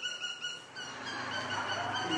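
Rapid, high-pitched chirping from birds, repeated in quick even runs, with a low hum coming in about halfway through.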